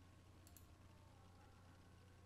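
Near silence: a low steady room hum, with a couple of faint clicks about half a second in from a computer mouse being clicked.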